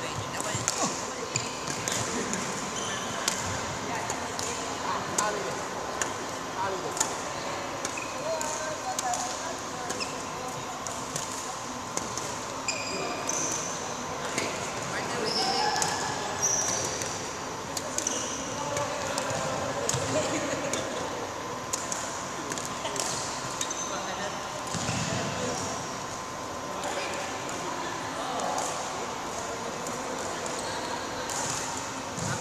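Badminton being played on an indoor court: repeated sharp racket strikes on shuttlecocks, shoe squeaks and footsteps on the court surface, with a faint steady hum and background voices in a large hall.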